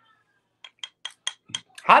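A quick run of small wet mouth clicks and lip smacks, about five in a second, from someone tasting a thick, chunky hot sauce.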